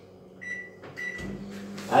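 Microwave oven keypad beeping twice as the heating time is set, then the oven starting up and running with a steady low hum.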